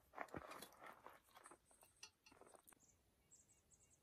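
Faint chewing of roasted vegetables that still have a little crunch, with small irregular crunches over the first three seconds or so.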